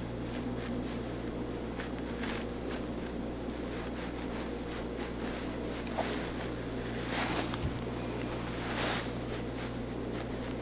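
Steady low ventilation hum in a small room, with a few faint soft rustles about two, seven and nine seconds in.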